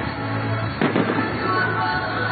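Fireworks going off, with one sharp bang a little under a second in, heard over music.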